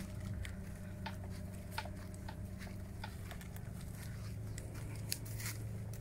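Footsteps of several people walking on a sandy dirt path: faint, scattered crunches over a low steady hum.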